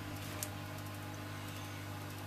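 Quiet steady low hum with light hiss, and one faint click about half a second in.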